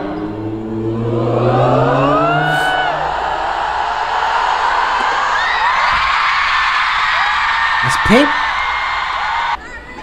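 Arena concert crowd screaming and cheering, heard from a concert video. A man's voice over the PA holds a long note that rises in pitch during the first few seconds, then the screams carry on alone and cut off suddenly near the end.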